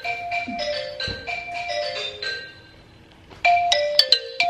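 Smartphone ringing with an incoming call: a repeating ringtone melody of short, bright chiming notes. The ringing breaks off for under a second near the end, then starts again.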